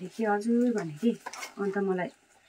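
A woman's voice talking in several short phrases.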